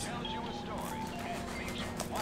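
Knife slicing through packing tape on a cardboard box in short scratchy strokes, over soft background music.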